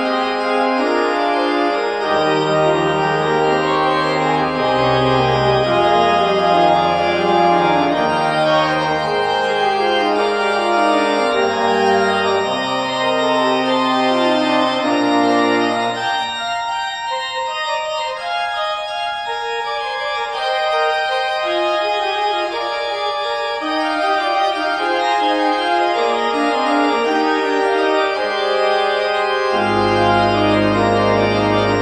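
Two-manual 1991 Martin Ott mechanical-action (tracker) pipe organ playing a polyphonic piece, manual lines over pedal bass notes. About halfway through the pedal drops out and the manuals play on alone, and the pedal comes back in at the very end.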